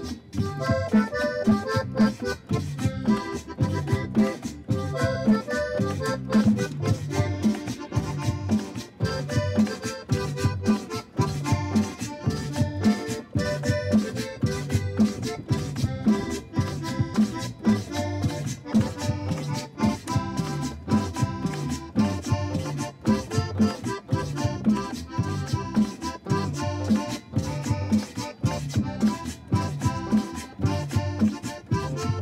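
Live Latin band playing an instrumental passage with a steady beat: drums, electric bass, guitar and an accordion-like melody line.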